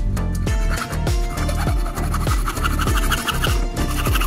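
Background music with a steady beat over a hacksaw rasping back and forth through PVC plastic; the sawing starts just under a second in.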